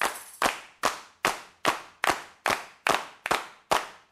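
Steady rhythmic handclaps, about two and a half a second, each sharp with a short ringing tail, in time like a beat.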